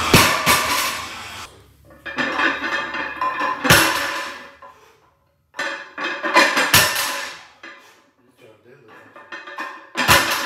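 Loaded barbell plates clanking down on a rubber-matted lifting platform during deadlift reps, a sharp knock with a ring about every three seconds. Music plays between the hits.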